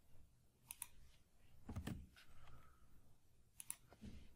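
Faint clicks of a computer keyboard being typed on: a couple of quick pairs of sharp key clicks with a duller key thump between them.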